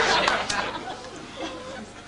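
Audience chatter and laughter, loud at first and dying away over the first second and a half.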